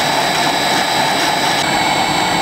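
A laboratory high-speed Cowles-type dissolver with a serrated disc runs steadily, making a continuous motor whine with steady high tones, as it grinds the pigment slurry of a latex paint.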